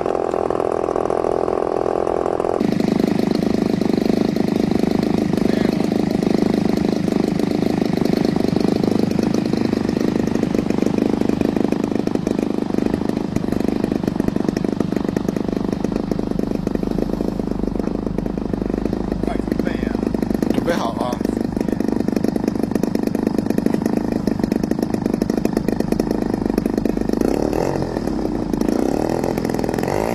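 Gasoline engine of a large radio-controlled MiG-3 model running steadily with its propeller turning, the sound changing abruptly about two and a half seconds in. Near the end it revs up, rising in pitch.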